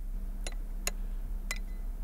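Chopsticks clicking against porcelain rice bowls during a meal: three or four light, separate ticks over a low steady hum.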